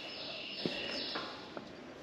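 A high, buzzy animal call that runs in about three joined stretches and stops a little over a second in.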